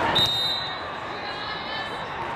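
A short, shrill whistle blast just after the start, the kind a volleyball referee blows to let the server serve. It sounds over the echoing chatter and ball thumps of a busy indoor sports hall, with a sharp knock right at the start.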